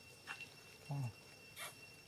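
A monkey gives one short, low grunt about a second in, with a few soft clicks around it.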